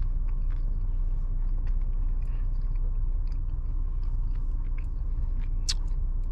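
Steady low rumble of a car's idling engine heard inside the cabin, with faint scattered clicks from dashboard climate-control buttons and knobs being pressed.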